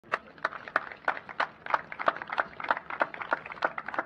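A few people clapping their hands. The loudest claps come evenly, about three a second, with fainter claps from others in between.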